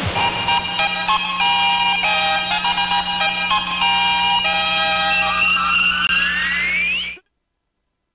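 Radio station jingle: a synthesized melody of held notes changing in steps over a steady low drone, ending in a rising sweep that cuts off suddenly about seven seconds in, followed by silence.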